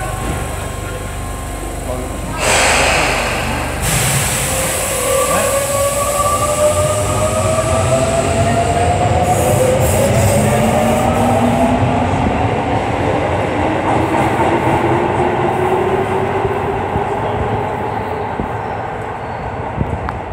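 Tobu 20050 series subway train pulling out of the station: a short burst of hiss about two and a half seconds in, then the VVVF inverter traction motors whining in several tones that climb steadily in pitch as the train accelerates, over running rumble from the wheels and rails.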